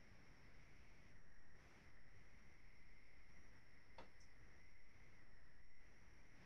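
Near silence: faint steady hiss of room tone with a thin steady whine, and one faint click about four seconds in.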